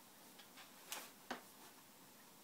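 Faint paper crinkling from a gift bag as a cat pushes its head inside: a few soft ticks, then two sharp crinkle clicks close together about a second in.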